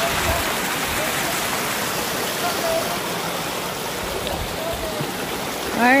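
Steady rush of flowing water, an even noise that holds throughout, with faint distant voices over it.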